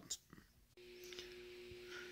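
Near silence, then a faint steady electrical hum that starts abruptly about a second in and holds a few fixed low tones.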